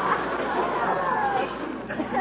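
Studio audience laughing at length, a dense mass of many voices on an old, narrow-band radio recording.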